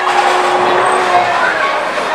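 Bowling alley din: a steady mix of rolling-ball and machinery noise with a steady hum that stops a little past one second in, over faint background voices.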